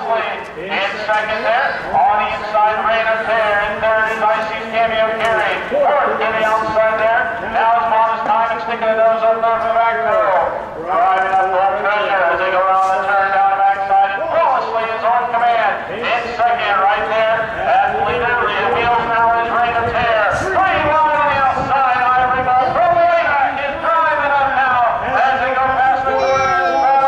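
Race announcer's voice over a public-address loudspeaker, calling the harness race rapidly and without pause.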